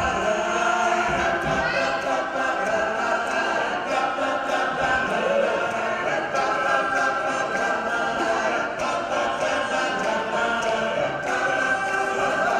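A men's a cappella group of about ten voices singing in close harmony, without instruments.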